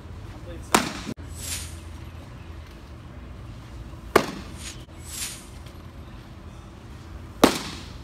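Pitched baseballs smacking into a catcher's leather mitt, thrown as sliders: three sharp pops, about three and a half seconds apart.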